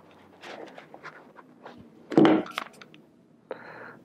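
Hands rustling and clicking against upholstery fabric and foam, with one louder thud about two seconds in. Near the end a cordless drill's motor starts whirring steadily as it begins driving a small self-tapping screw into the edge of the hardboard.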